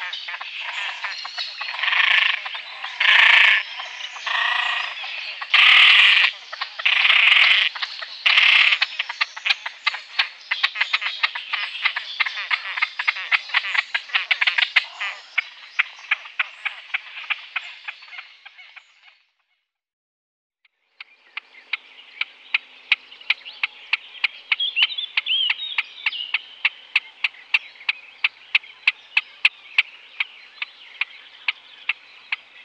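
Great crested grebe calling: about six loud, harsh, croaking calls in the first nine seconds over a run of rapid ticking. It breaks off into silence about two-thirds of the way through, then goes on as a rapid ticking at about three clicks a second.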